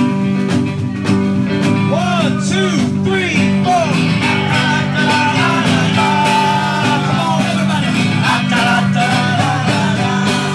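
Live guitar band playing with a bar crowd singing along loudly, the crowd voicing the song's missing trumpet riff in several gliding then held notes.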